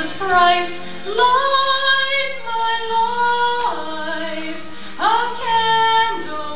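A female voice singing long held notes, sliding into each new pitch, over a steady instrumental backing.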